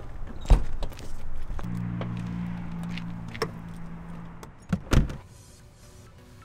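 Car door sounds with keys jangling: a thump about half a second in, a steady low hum through the middle, then the door shutting with two heavy thumps near the end, after which it goes much quieter inside the closed car.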